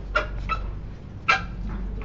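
A dog barking three short times, over a steady low electrical hum.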